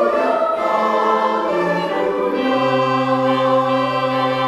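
Church choir of men and women singing long held chords. A steady low note comes in about halfway through and is held.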